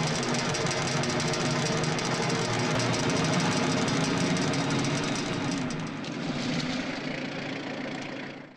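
Jeep engine running steadily, a little quieter from about six seconds in.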